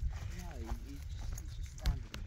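A person's brief, quiet murmur about half a second in, over a steady low rumble, with a sharp tap just before the end.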